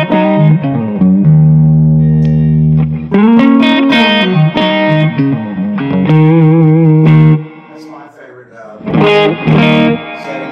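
Electric hollow-body guitar played through a Longhorn El Capitan tube amp (a Dumble Steel String Singer-style amp): phrases of chords and single notes with vibrato, including a long held low note early on. The playing drops away for about a second and a half near the end, then one more short phrase.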